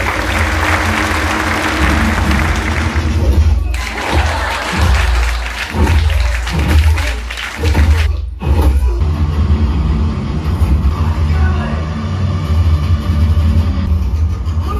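Action-film soundtrack played loud through a home theater system: music with a heavy, pulsing bass, over a dense noisy wash like cheering or applause in the first few seconds. It drops out abruptly twice, around 4 and 8 seconds in.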